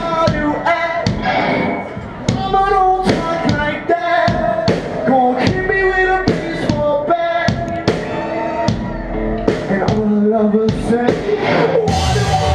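Live rock band playing: a singer's voice over electric guitars and drums, with regular drum hits.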